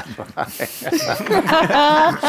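People laughing at a joke: breathy laughs at first, then a loud, pulsing voiced laugh in the second half.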